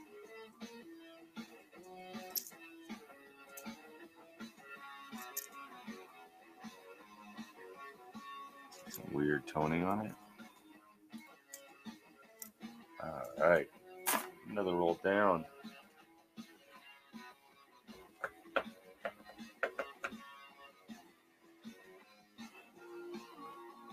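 Guitar background music, with a voice singing twice in the middle, over scattered light clicks of pennies being handled and sorted.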